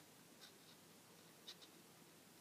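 Near silence with faint handling of a metal crochet hook and rubber loom bands: two soft ticks, about half a second in and a second and a half in.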